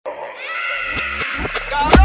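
A high-pitched, drawn-out vocal cry held on a nearly steady pitch, with a few sharp clicks over it, ending in a sharp loud hit right at the end.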